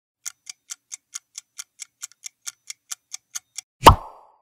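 Clock-style ticking countdown sound effect, about four to five even ticks a second. Near the end comes one loud, sudden hit sound as the answer is revealed.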